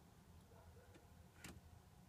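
Near silence, with a single faint click about one and a half seconds in, in step with the headlights being switched on.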